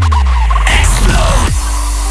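Hardstyle DJ mix at a breakdown. The kick drum stops and its bass falls away in a downward sweep, a short warbling sample follows, and about a second and a half in a held synth chord begins.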